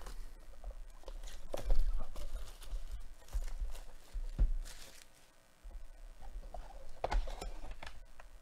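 Cardboard trading-card box being handled and opened by gloved hands: irregular rustling and scraping of the cardboard with a few sharper knocks, loudest about two seconds in, about four and a half seconds in, and near the end.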